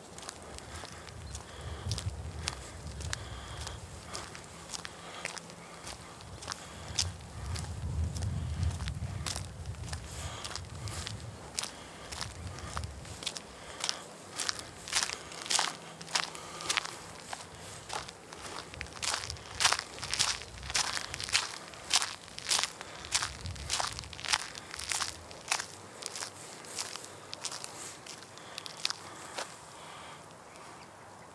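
Footsteps crunching on gritty asphalt and leaf litter at a steady walking pace, about two steps a second, loudest in the second half. A low rumble runs under the steps in the first half.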